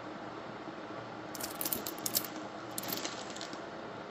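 Plastic food packets crinkling and rustling as a hand rummages through a pantry drawer, with a bag of dried fusilli pasta rattling as it is lifted out. The crackling comes in a cluster of sharp bursts between about one and three seconds in, over a steady low hiss.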